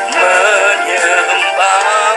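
Women singing a Christian worship song into microphones over sustained instrumental accompaniment, their voices wavering in pitch.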